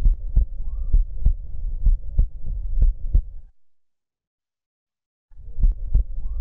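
Heart sounds heard through a stethoscope at the aortic area: regular lub-dub beats, about one a second, with nothing remarkable and no murmur at this spot. The sound breaks off for about two seconds past the middle, then resumes.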